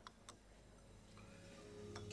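Near silence, broken by two faint, short clinks near the start: a china teacup touched against its saucer. Faint steady background music swells up during the second half.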